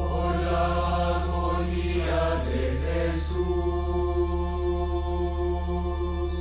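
A mixed choir of nuns and monks singing a slow devotional chant together, with long sustained notes; the last note is held for about three seconds. A steady low hum runs underneath.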